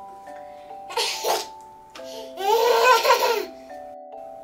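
A toddler's short breathy burst about a second in, then a loud, high-pitched laugh lasting about a second, over background music of steady held tones.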